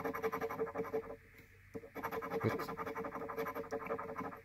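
A large coin scraping the coating off a lottery scratch-off ticket in quick, repeated strokes, with a short pause a little after the first second.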